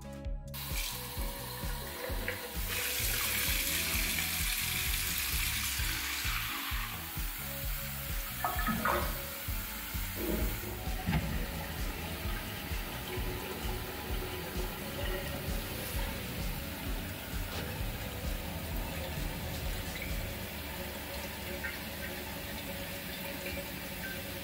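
Water running from a bidet mixer tap into the bowl and draining away through the newly fitted drain, a steady rush that is strongest for a few seconds near the start. This is the leak test of the new bidet drain.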